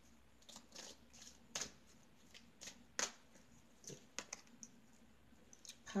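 Tarot cards being handled and shuffled by hand: scattered soft flicks and snaps of card stock, with two louder snaps about one and a half and three seconds in.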